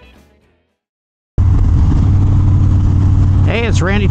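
Music fades out, then after about a second of silence the sound cuts in abruptly: a Harley-Davidson Dyna Street Bob's Twin Cam 103 V-twin running steadily at freeway speed, with wind rushing on the microphone. A man's voice starts near the end.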